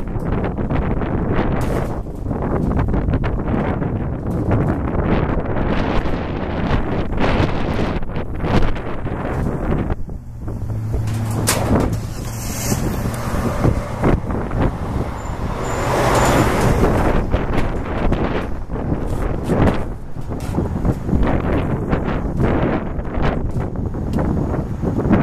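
Strong gusting wind buffeting the microphone. Midway a vehicle passes, with a low steady engine hum followed by a swell of road noise.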